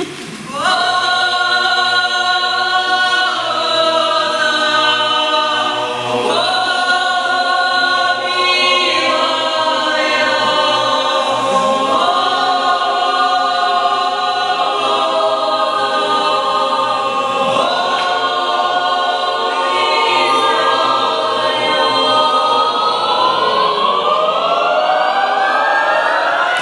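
Mixed choir singing a Ukrainian carol a cappella, holding full chords that change every few seconds. Near the end the voices slide upward together into a final swell.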